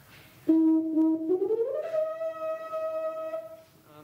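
Tuba played high in its range: a note starts suddenly about half a second in, slides up about an octave and is held before stopping near the end. It demonstrates high notes played by tightening the lips rather than pressing the mouthpiece.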